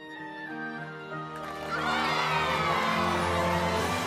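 Background score music with held chords, joined about a second and a half in by a crowd cheering and clapping that grows louder.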